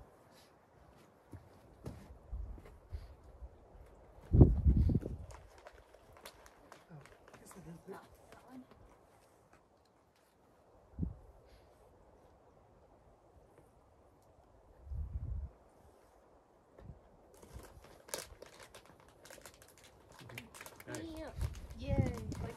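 Quiet outdoor sound around a boulder climb: faint scattered scuffs and clicks, with two short low rumbles about four and fifteen seconds in, the first the loudest thing heard, and a busier patch of scuffing and faint voices near the end.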